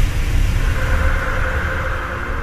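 Low rumbling drone from a TV station's logo sting, the sustained tail after a whoosh and boom, with a few faint held tones. It slowly fades.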